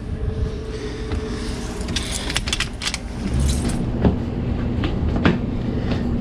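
A few light clicks and rattles over a steady low hum.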